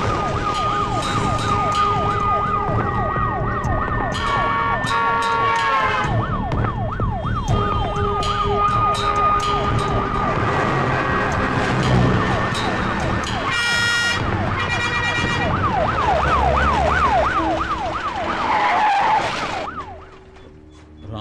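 Vehicle siren in a fast yelp, a rising sweep that drops back about three times a second, over traffic with car horns sounding in long, steady blasts. The noise cuts off just before the end.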